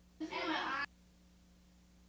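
A short vocal sound, a bit more than half a second long, cut off abruptly just under a second in, followed by a faint steady hum.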